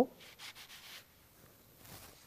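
Faint rustling and rubbing of a paper towel being picked up and handled, in soft patches during the first second and again near the end.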